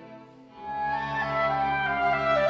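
Clarinet and string quartet playing a classical concerto movement. The sound thins to a brief lull, then about half a second in a melody enters and steps upward over a sustained low cello note.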